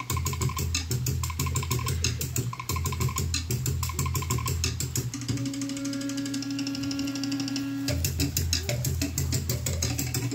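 Fast Polynesian dance drumming, a quick even beat of sharp wooden strokes over a bass. About five seconds in the drums break for a long held note, and the drumming picks up again about three seconds later.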